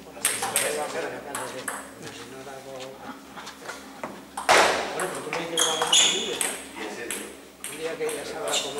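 Celluloid-style table tennis ball clicking off rubber bats and the table top in a rally, a series of short sharp ticks a fraction of a second to about a second apart, the loudest about four and a half seconds in.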